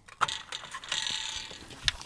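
Tripod adapter of an Olight Haloop camping lamp being screwed onto a light stand's threaded post: a click, then a grating rasp of the threads turning for about a second, and a sharp click near the end.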